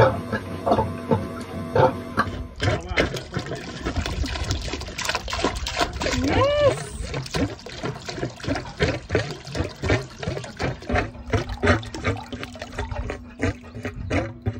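Water pumped by a Whale Gulper shower pump splashing out of its clear outlet hose into the canal in a fast, irregular patter of splashes: the newly plumbed pump is working.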